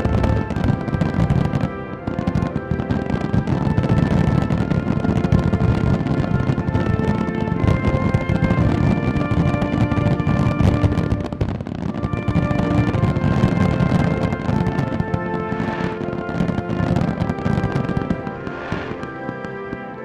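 Music with a steady stream of fireworks bangs and crackles layered over it.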